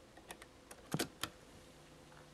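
Mechanical clicks of a cassette deck's piano-key transport buttons being pressed: a few light clicks, then a louder double click about a second in and one more just after. A low steady hum sets in right after the last click.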